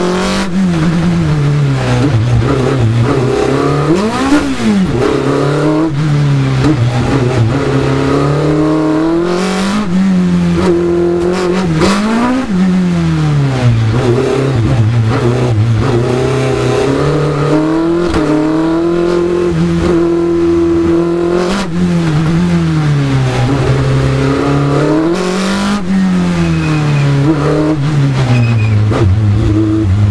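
Open-cockpit racing car's engine heard from on board, revving up and dropping back again and again as the car accelerates and lifts through a slalom of cone chicanes in low gears. The pitch rises and falls in quick repeated sweeps.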